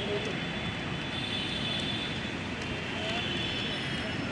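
Steady outdoor background noise with a low rumble, and faint, indistinct voices of people nearby.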